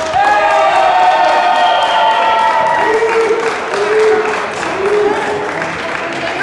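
Crowd of spectators cheering and shouting, with several long held cries over the first few seconds, then three shorter calls repeated in a rhythm like a chant.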